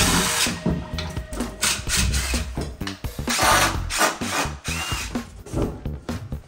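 Cordless power driver running in several short bursts as screws are backed out of a wooden shelf frame during its dismantling, over background music.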